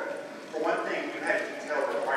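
Only speech: a woman talking to an audience, with a short pause about half a second in.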